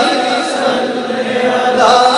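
A man's voice chanting a devotional naat through a microphone. The held phrase fades and dips in loudness mid-way, and a new sung phrase begins near the end.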